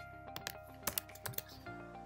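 Computer keyboard keys being typed in a handful of scattered clicks, over steady background music.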